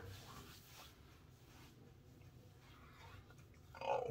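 Faint rubbing and patting of hands spreading aftershave splash over the neck and the back of the head, with soft, irregular skin-on-skin and hair rustles.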